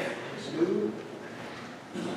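A brief low voice sound, a short murmur whose pitch falls, about half a second in, over faint indistinct talk.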